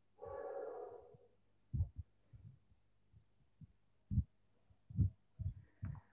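Faint, irregular low thumps picked up by a headset boom microphone, about a dozen dull knocks scattered over a few seconds. A short hum-like tone sounds just after the start.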